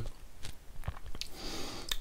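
Small wet mouth clicks and lip smacks from a man pausing between sentences, then a soft breath drawn in near the end before he speaks again.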